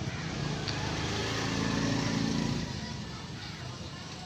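A motor vehicle's engine humming steadily, swelling about two seconds in and then fading away, as if passing by.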